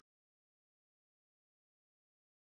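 Digital silence: the audio track drops out completely.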